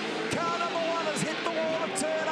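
An excited man's voice, without clear words, over the steady noise of race cars on track.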